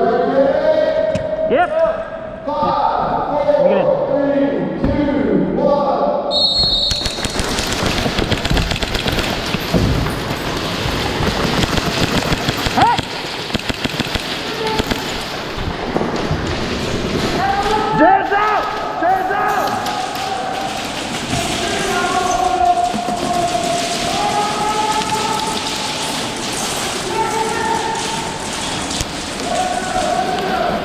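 Rapid airsoft gunfire, a dense run of clicks with BBs pattering against walls and floor, starting about six seconds in. Players' voices sound over it, at the start and again from about halfway.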